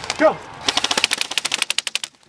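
Airsoft electric rifle firing full-auto: a fast, even string of sharp mechanical shots starting about half a second in and running on, after a shouted "Go!".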